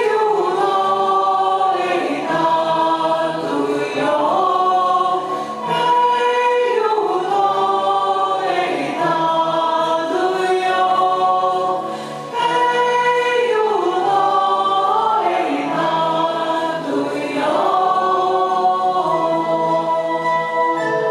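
A choir singing a slow melody in long held phrases, with a short break between phrases about twelve seconds in.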